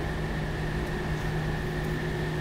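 A steady mechanical hum with a faint high whine held on one note throughout.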